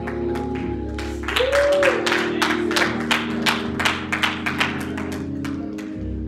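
Held instrumental chords of church music, with a run of hand claps, about three to four a second, starting about a second in and fading out near the end.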